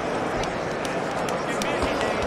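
Boxing-match crowd noise: spectators' voices shouting over a steady din, with four sharp smacks in about a second and a half.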